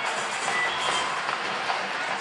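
Studio audience cheering and applauding, a dense steady noise of many claps and voices at a celebration.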